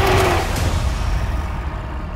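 A film creature's roar, a werewolf (lycan) effect, loudest about the first half-second, giving way to a deep steady rumble as the higher sounds fade.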